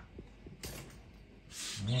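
A brief soft rustle about half a second in, with a few faint clicks, then a person starts speaking near the end.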